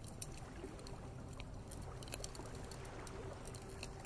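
Faint background soundscape of gentle lake water lapping, with scattered soft crackles of a campfire over a steady wash and a faint steady tone underneath.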